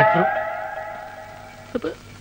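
A single loud ringing tone with a sudden start that fades away steadily over about two seconds, its upper overtones bending slightly in pitch. A short spoken word comes near the end.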